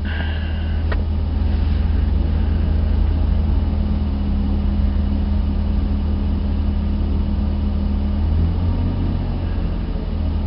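Steady low engine drone heard from inside a stationary car, with a short click about a second in.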